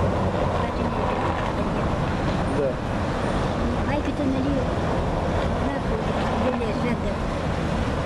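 Steady outdoor street noise, a low rumble and hiss like passing traffic, with a few brief, faint snatches of voice.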